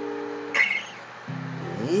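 Strummed acoustic string instrument, a guitar or ukulele: a held chord rings out and stops about half a second in, a brief sharp sound follows, and a new low chord is struck about a second and a half in. A voice starts singing right at the end.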